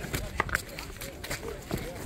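Two fighting buffalo butting heads: a few sharp knocks as their horns clash, the loudest two close together about half a second in, over a low murmur of onlookers' voices.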